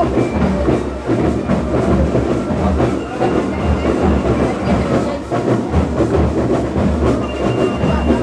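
School rhythm band's drum section playing: large bass drums and snare drums beating a dense, steady marching rhythm.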